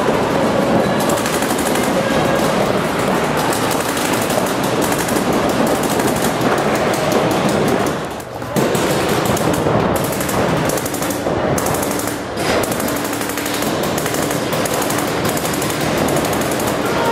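Paintball markers firing in rapid strings of shots, several at once, with brief lulls about eight and twelve seconds in.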